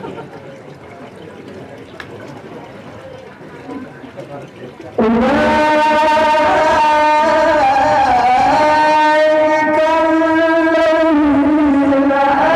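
Low murmur of voices, then about five seconds in a man begins Quran recitation (tilawah) into a microphone over the PA. He sings long held notes that bend slowly in pitch.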